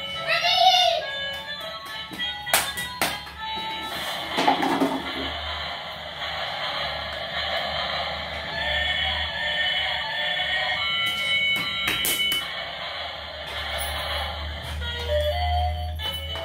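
Battery-operated light-up toy playing a tinny electronic tune. It opens with a rising whoop, and a few sharp knocks come through as it moves about.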